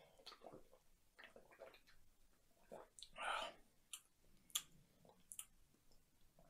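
Quiet mouth sounds of a person drinking from a can and tasting: faint swallows, a louder breathy sound about three seconds in, then a few sharp lip-smacking clicks.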